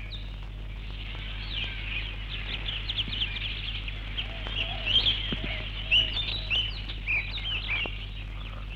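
Birds chirping and twittering: many quick, short chirps and trills in a dense chorus, over a steady low hum.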